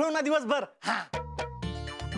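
A man's animated voice for about half a second, then a short breath, then background music with low bass notes coming in a little after a second in.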